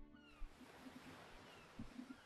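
Near silence: a faint hiss with a few faint, high, falling animal cries.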